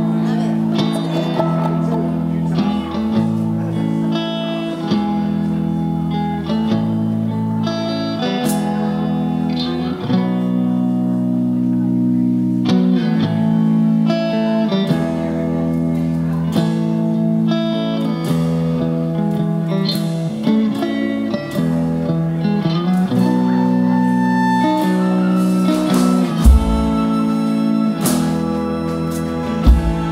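Live band playing a slow instrumental opening: electric guitar lines and violin over held keyboard chords and upright bass, with chords changing every second or two. Two short low thumps stand out near the end.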